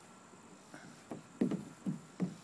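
Dull thumps of a toddler's sneakers and knees against a hollow plastic playground slide as he climbs up it, three knocks in the second half, the last two loudest.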